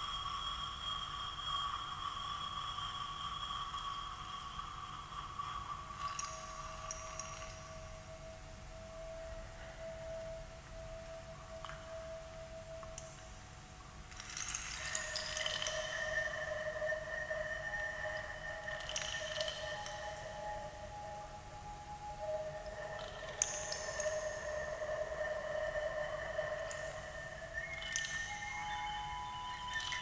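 Improvised experimental music: long, whistle-like tones blown into a small object held at the mouth. Usually two pitches sound together, changing every few seconds, with brief hissy bursts now and then.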